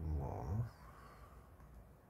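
A man's brief low hummed murmur in the first moment, then faint room tone.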